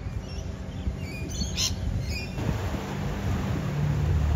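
Small birds chirping, with one loud, sharp squawk about a second and a half in. From about halfway, steady wind-and-surf noise with a low hum takes over.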